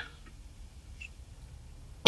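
Quiet room tone: a faint low hum, with one tiny short tick about halfway through.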